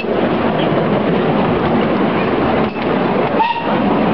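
Miniature steam train running along its track: a steady, continuous rush of wheels on rails and steam from the small locomotive, with a short high note about three and a half seconds in.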